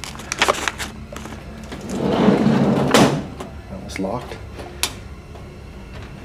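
Steel filing cabinet drawer sliding on its runners and knocking against its stop about three seconds in, with a few sharp metal clicks and handling noise around it.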